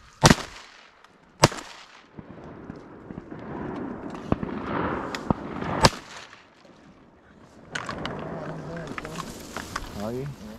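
Three shotgun shots fired at flying ducks: one just after the start, a second about a second later, and a third near six seconds in, with fainter pops in between.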